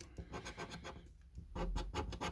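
A coin scratching the silver latex off a paper scratch card: a run of quick rasping strokes that thins out about a second in and picks up again, louder, near the end.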